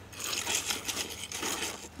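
Sand and gravel on a conveyor belt crunching and rustling, a dense crackly hiss that starts just after the beginning.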